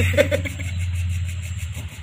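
A man's short laugh just after the start, over a steady low hum that fades toward the end.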